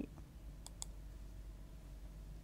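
Low steady hum of room tone with two faint, sharp clicks in quick succession about two-thirds of a second in.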